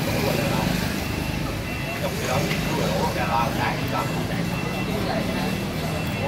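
Indistinct voices talking in the background over a steady low hum of street traffic.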